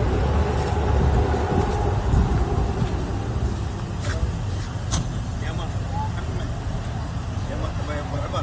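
Steady low rumble of a vehicle engine running, with a sharp click about five seconds in.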